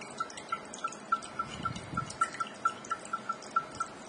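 Rapid run of short, high ticks of the same pitch, about four a second, from Windows Media Center's navigation sound played by a Samsung Q1 Ultra as its picture gallery is scrolled with the device's keys.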